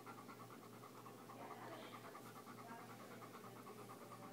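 A dog panting faintly, in a rapid, even rhythm of short breaths.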